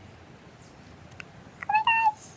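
A cat meows once, briefly, near the end: a short call of steady pitch.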